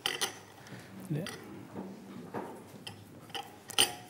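Quiet room with a low murmur of voices and a brief spoken 'yeah', broken by two sharp, chinking clicks: one at the start and a louder one near the end.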